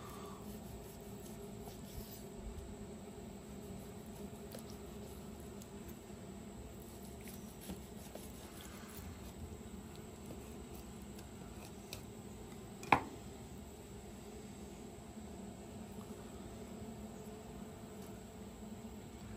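Chef's knife cutting seared ribeye steaks in half on a wooden cutting board: faint, soft slicing and handling sounds over a low steady hum, with one sharp knock about two-thirds of the way through.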